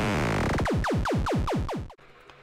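Synthesized magic-portal sound effect. Many falling tones sound together, then a run of about ten quick downward zaps comes faster and faster and stops suddenly just before the end.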